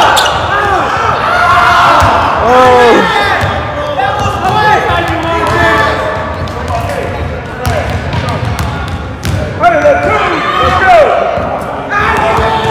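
Basketball being dribbled on a hardwood gym floor, repeated bounces, with sneakers squeaking in short high chirps as players cut and move.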